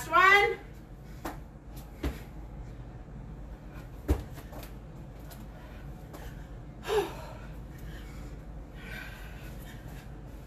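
A few separate dull thuds of feet landing on a carpeted floor during burpee jumps, with a woman's short vocal sounds of effort at the start and again about seven seconds in.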